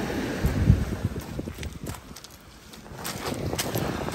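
Wind buffeting the microphone, loudest as a low rumble about half a second in, with a few light clicks and knocks scattered through the rest.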